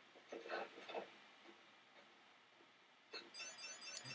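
Near silence: room tone, with a few faint, brief sounds between about half a second and a second in, and again near the end.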